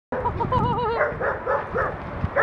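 A dog vocalising: a wavering, drawn-out call in the first second, then a quick run of about four short barks.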